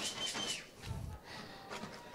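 Faint open-air background of a football field, with a short high whistle-like tone lasting about half a second at the start.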